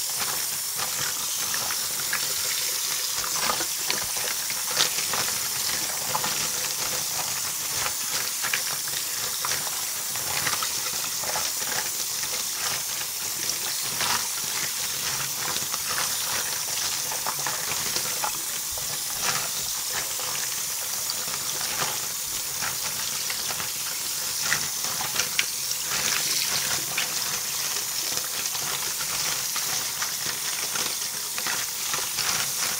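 Cold tap water running into a sink while a hand stirs a pile of small plastic Littlest Pet Shop figures, a steady hiss with scattered light clicks of plastic knocking together.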